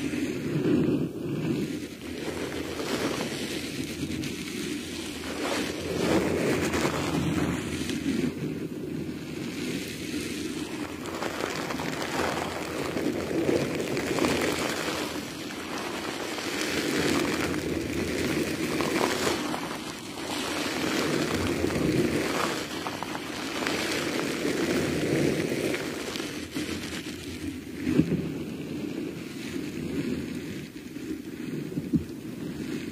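Close-miked ASMR squishing and handling of a squid held at the microphone: a continuous rustling, squelching noise that swells and fades every few seconds, with one sharp tap near the end.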